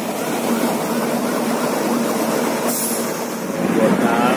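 Steady noise of a police water cannon truck and fire hoses spraying water, with faint voices in the background.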